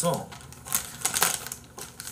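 Paper or plastic wrapping being handled, giving several short, sharp crackles.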